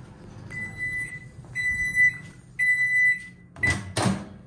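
Countertop microwave oven beeping three times at the end of its cycle, each beep about half a second long. Near the end comes a sharp clack as the door is pulled open by its handle.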